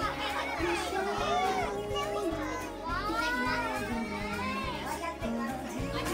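Young children's excited voices, high calls and squeals rising and falling in pitch, over music with long held notes.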